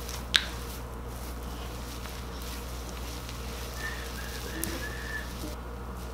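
Soft rubbing of hands massaging a hair mask into a child's hair, faint over a steady low hum, with one sharp click about a third of a second in.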